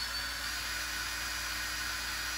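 Power drill running steadily, a continuous high whir.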